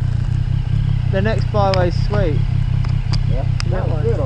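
Motorcycle engine idling steadily close by, a low even rumble, with a couple of light clicks near the end.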